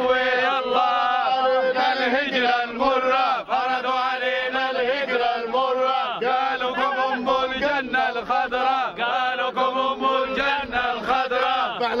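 A group of men chanting together in unison, repeating one short call over and over in a steady rhythm.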